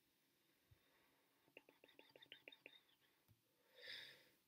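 Near silence, broken in the middle by a faint run of about ten quick clicks from a computer mouse, and by a soft breathy sound near the end.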